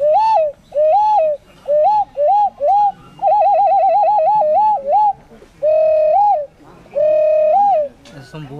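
A small handheld whistle blown in a run of short swooping notes. About three seconds in it breaks into a fast warbling trill of about five wobbles a second, and it ends on two longer held notes.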